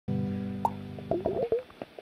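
Acoustic guitar: a chord rings out for about a second, then a few short sliding notes follow, and the playing stops about one and a half seconds in.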